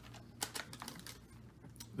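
Small paper receipt handled and unfolded between the fingers: a run of faint, light crinkles and ticks, the sharpest about half a second in.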